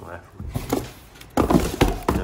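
Cardboard packing inserts being grabbed and pulled about inside a corrugated cardboard box: scraping and rustling with dull knocks, louder in the second half.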